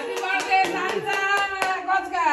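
A group of people singing together while clapping their hands in time, about four claps a second.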